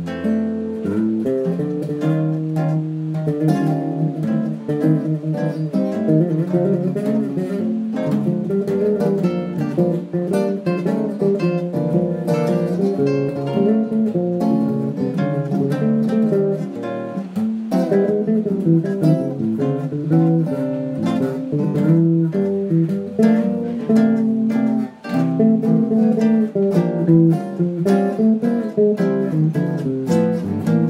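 Instrumental jazz trio of electric guitar, acoustic guitar and bass playing a ballad standard, with plucked guitar lines over a walking bass, recorded on a mobile phone.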